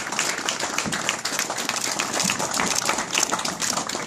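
Audience applauding: many hands clapping at once, at a steady level.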